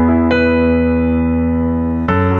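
Piano playing the slow introduction of a ballad: held chords ringing and slowly fading, with a new chord struck about a third of a second in.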